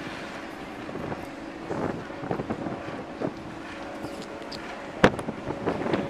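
Steady drone of a ferry's engines, with wind buffeting the microphone on the open deck. Scattered small clicks and one sharp knock about five seconds in.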